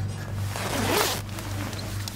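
Zipper of a winter parka being pulled, one rasping stroke lasting about half a second near the middle, over a steady low hum.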